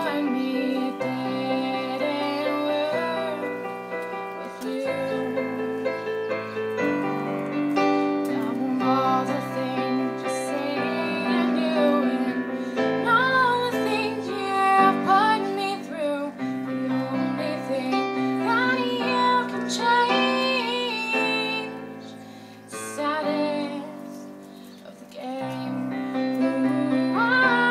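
A woman singing a melody over piano-sound chords played on an electric stage keyboard. The music drops to a quieter passage a few seconds before the end and then comes back up.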